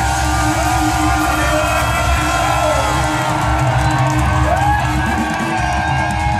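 Live punk rock band playing loud, steady through a club PA: distorted guitars over drums and bass, with the crowd whooping.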